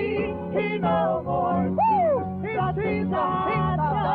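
A 1978 gospel song recording: a sliding, wavering melody line over steady bass notes, with one long swoop up and down about two seconds in.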